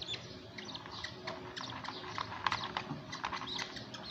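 Budgerigar chicks peeping: many short, high cheeps, several a second, while they are handled.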